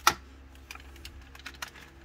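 Clear plastic clamshell packaging being handled: one sharp click just at the start, then a few faint plastic ticks.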